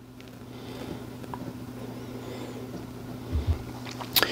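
Quiet handling noise from a small metal tripod head being turned over in the hands, with a couple of soft low thumps about three and a half seconds in. A steady low hum runs underneath.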